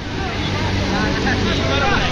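A motor vehicle engine, most plainly a motor scooter being ridden through flowing floodwater, running steadily and growing louder, over the rush of the water. Bystanders' voices are faintly mixed in.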